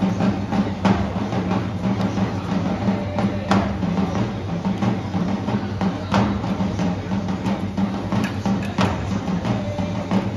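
Cheering-section drums beating a steady rhythm in the stands, with sharp knocks now and then over constant crowd noise.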